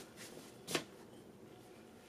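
Faint rustling of wrapping being handled as a wrapped item is opened, with one brief, sharper rustle about three-quarters of a second in.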